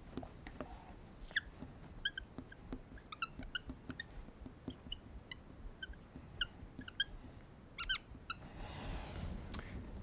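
Dry-erase marker squeaking on a whiteboard in many short, quick strokes as words are written, faint.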